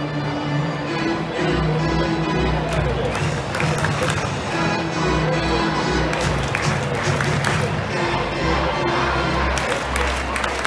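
Music played over a ballpark's loudspeakers, with held notes over a pulsing bass. Crowd noise and scattered clapping come through underneath.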